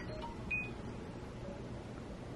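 Faint room noise with a short, high electronic beep about half a second in.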